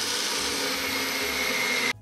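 Electric motor of a Philips Walita 5-in-1 food processor spinning its citrus-juicer cone while halved oranges and lemons are pressed onto it: a steady motor whine that cuts off suddenly near the end.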